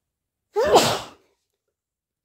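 A person sneezing once, about half a second in: a short vocal burst that breaks into a sharp, hissy spray and is over within a second.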